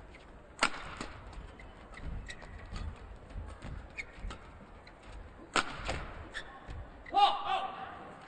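Badminton rally: sharp cracks of rackets striking the shuttlecock at irregular intervals, the loudest a little under a second in and twice about five and a half seconds in, with lighter hits between them. A brief vocal cry comes about seven seconds in as the rally ends.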